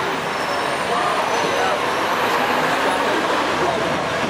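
Steady city street traffic noise heard from the top deck of a sightseeing bus: engines and tyres running, with indistinct voices in the background.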